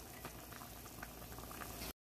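Pan of soup at a rolling boil: faint, steady bubbling with small scattered pops. It cuts off abruptly near the end.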